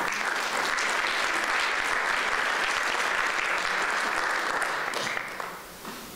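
Audience applauding steadily, the clapping dying away about five and a half seconds in.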